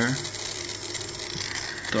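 Small DC motor running slowly with a light mechanical rattle. It is driven by a 555-timer PWM circuit at its lowest setting, where the timer still gives short pulses, so the motor cannot be brought to a stop.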